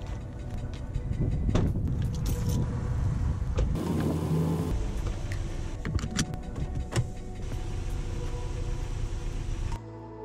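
Sounds of a car being loaded and got into: cargo rustling and knocking in the back of an SUV, a short electric motor hum about four seconds in, and a seat-belt buckle clicking shut, followed by a steadier low car noise.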